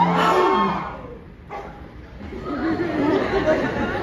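A held sung note with musical accompaniment ends in the first second; after a short lull, a jumble of many voices talking at once takes over.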